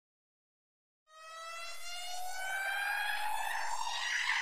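About a second of dead silence, then an electronic riser: one pitched synth tone with overtones gliding slowly upward and swelling in loudness, the build-up of a music track's intro.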